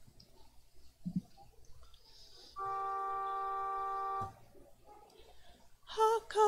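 A keyboard instrument sounds two notes held together at a steady level for under two seconds midway, then stops abruptly; it gives the starting pitch for the a cappella singing that follows. Around it, only faint room noise and a small knock.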